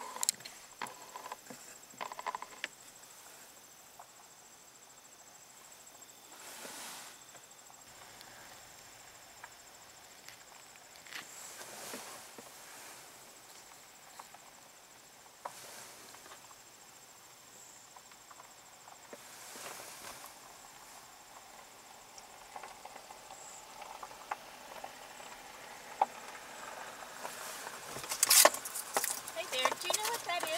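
Quiet outdoor ambience with a faint, steady high insect drone, a few soft rushing swells passing through, and louder sound building near the end.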